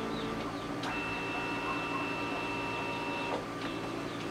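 Canon D520 multifunction printer running a multi-page scan, moving from one page to the next. Its mechanism runs with a steady high whine from about a second in until just past three seconds, with a click where the whine starts and another where it stops.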